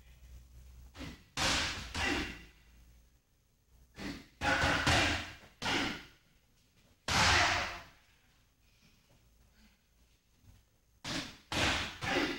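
Punches and knees landing on Thai pads, each with a sharp, forceful exhaled breath from the striker. They come in quick groups of two to four strikes, with short pauses between the combinations.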